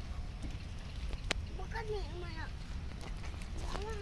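People's voices talking in short phrases about two seconds in and again near the end, over a steady low rumble, with one sharp click just over a second in.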